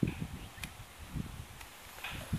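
A few irregular soft low thumps with light rustling: footsteps and handling noise of a hand-held camera as it is carried between plant pots.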